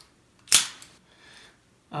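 Accu-Tac BR-4 G2 bipod being handled: one sharp snap about half a second in, then a lighter click and a faint rustle.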